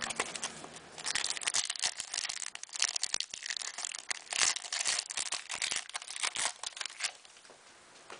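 Foil wrapper of an Upper Deck Finite basketball card pack crinkling and tearing as it is ripped open by hand, a dense crackle that dies down near the end.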